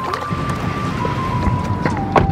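Water sloshing and splashing as a hand stirs the water in a backyard stock-tank pond, under background music with a long held note.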